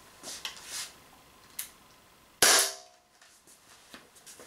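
A single sharp shot from an Umarex Walther PPQ M2 .43-calibre CO2 pistol about two and a half seconds in, with a short decaying ring after it. Faint handling clicks come before the shot.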